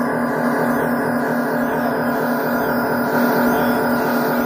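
Live music performance: a dense, sustained droning texture of many held tones over a strong steady low tone, running on without a break.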